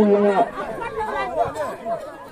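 Several people's voices talking and calling out over one another, with one voice holding a drawn-out note at the very start.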